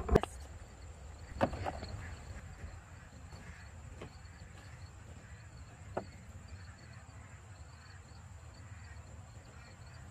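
Squash vines and leaves rustling as they are handled, with a few sharp clicks or snaps, the loudest about a second and a half in. Behind it insects keep up a faint, steady chirping.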